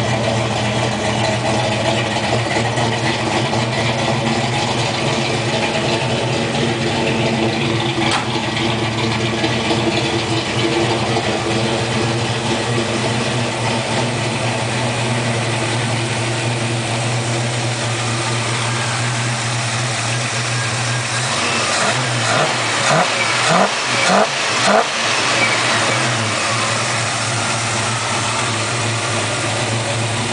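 1972 Pontiac GTO's Pontiac V8 idling steadily, then blipped about five times in quick succession about two-thirds of the way in before settling back to idle.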